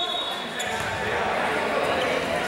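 A basketball being dribbled on an indoor gym court, with players' voices in the background.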